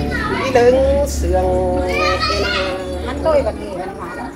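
Thái folk love song (hát giao duyên) sung in a sung-chanted style, with long held notes that bend at their ends, and other voices behind.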